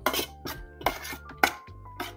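Metal spoon clinking and scraping against a thin metal pot while stirring shredded bamboo shoots with seasonings. About four or five sharp clinks in two seconds.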